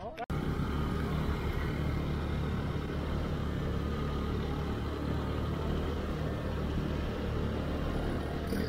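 Motorcycle being ridden at steady speed: a steady low engine drone mixed with wind and road rush. It cuts in abruptly at the start.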